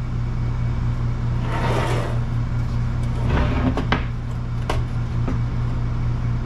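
A steady low hum, with scrapes and a few metal clunks as a rear suspension assembly (strut, knuckle and A-arm) is shifted and turned over on a steel workbench.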